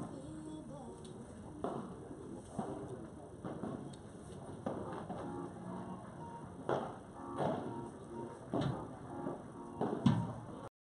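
Padel rally: the ball is struck back and forth by rackets, a sharp knock about every second. Low murmuring voices run underneath.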